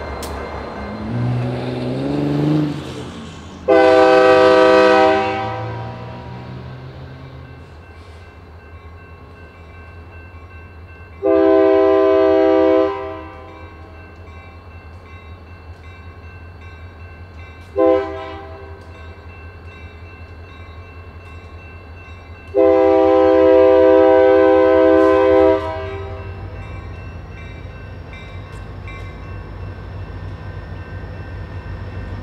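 Diesel locomotive horn sounding the grade-crossing signal, long, long, short, long, over the locomotive's engine running; the engine's pitch rises in the first few seconds as it throttles up.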